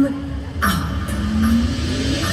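Parade music playing over outdoor loudspeakers: a long pitched note that dips and slides back up about half a second in, then holds, over a low rumble, with a brief hiss at the dip.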